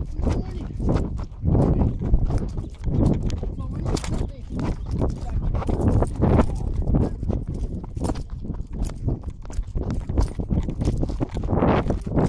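Handling noise from a covered camera rubbing and knocking against clothing or skin, with irregular thuds about twice a second.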